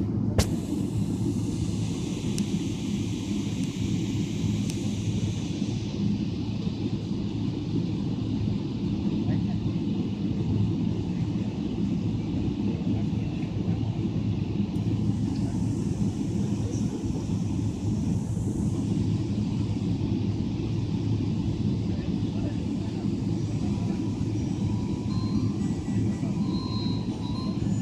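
Inside the cabin of a Boeing 777-300ER taxiing: a steady low rumble of the engines at taxi power and the cabin air, with a hiss higher up that rises and falls. A single sharp click sounds just after the start.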